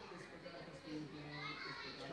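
Indistinct voices talking in the background, with children's voices among them.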